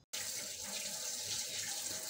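Water running steadily from a kitchen tap.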